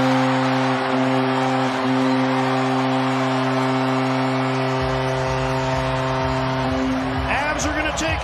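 Arena goal horn sounding one long steady note over a cheering crowd, celebrating a home-team goal. The horn stops about seven seconds in.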